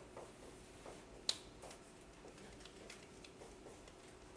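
Dry-erase marker writing on a whiteboard: faint scattered ticks and short strokes, with one sharp click about a second in, over a faint steady hum.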